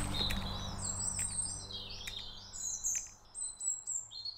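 Small birds chirping in runs of short, quickly repeated high notes, while background music fades out under them.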